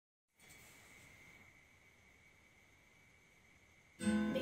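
Near silence: faint room tone with a thin, steady high-pitched tone. It begins after a fraction of a second of total silence.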